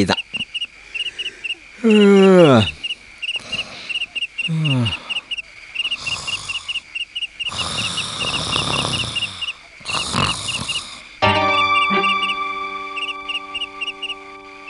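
Night-time sound effects: a cricket chirping steadily about three times a second, with two low calls falling in pitch near the start and a few breathy rushes of noise in the middle. A soft music bed of held chords comes in near the end.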